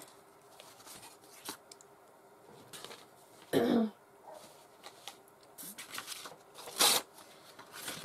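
Quiet handling of torn paper scraps as they are laid onto a collage, with a person clearing her throat about halfway through and a short sharp noise near the end.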